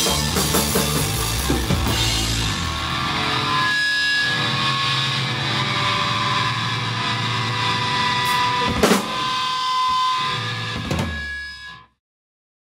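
A punk rock band with drums, bass and electric guitar plays the end of a song. About two and a half seconds in, the low end drops away and held notes ring on, broken by a few drum and cymbal hits, before the sound cuts off suddenly just before the end.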